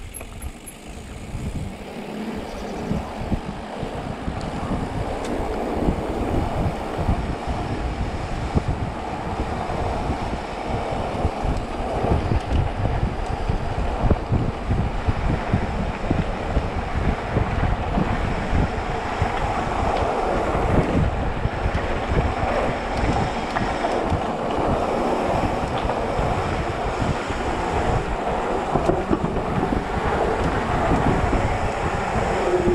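Wind rushing over the camera microphone together with the mountain bike's tyres and frame rattling over rough concrete as it rolls downhill, the noise building over the first few seconds as speed picks up.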